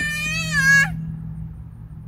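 A toddler's drawn-out, high-pitched vocal call lasting under a second and rising in pitch at its end, over a steady low hum.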